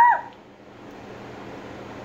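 A single short, high-pitched vocal call that rises and then falls in pitch, right at the start, followed by quiet room tone.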